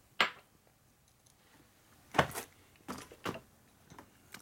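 Steel transmission gears from a Harley-Davidson Milwaukee-Eight six-speed gearbox clinking as they are handled on a steel bench: four short, sharp clicks, one just after the start and three in the second half.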